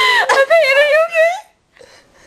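A girl's voice making a long, wavering, high-pitched sound without words, which breaks off about a second and a half in.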